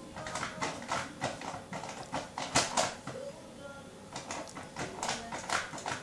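A cat rummaging in a kitchen cupboard: irregular taps, knocks and rustles as it paws at packets and tins on the shelf, with the loudest pair of knocks about two and a half seconds in.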